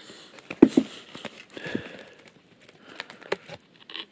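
Takeaway packaging being handled: a cardboard food box and its bag rustling and crinkling in scattered soft bursts, with a short knock about half a second in.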